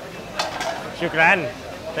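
A man's voice in a short, drawn-out exclamation that rises and falls in pitch about a second in. Before it, about half a second in, there is a single sharp click or knock.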